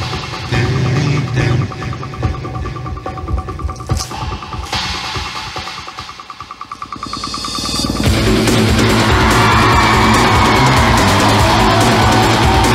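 Performance music: a fast pulsing build-up that thins and swells, then loud heavy rock music crashes in about eight seconds in.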